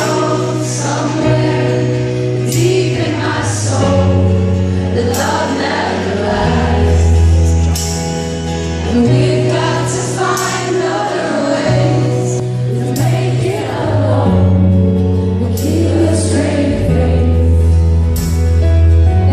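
Live band playing a slow rock ballad, with bass notes that change every couple of seconds and cymbal strikes, while many voices sing along together.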